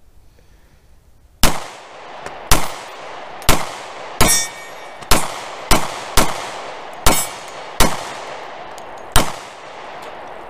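Ten shots from a Rock Island Armory BBR 3.10 compact .45 ACP 1911 pistol, fired at an uneven pace of about one a second, each followed by a long echo. A steel target rings briefly after one of the middle shots.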